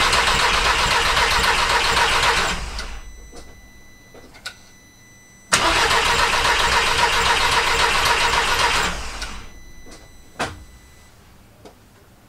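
Mk1 Audi TT four-cylinder engine turned over on the starter in two bursts of about three seconds each, with its fuel injectors pulled out on the rail and spraying, a test for which injector is behind the rough running. A single sharp click about ten seconds in.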